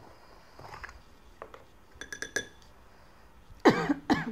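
A few quick ringing clinks on a glass pickle jar about halfway through, then a sharp cough near the end.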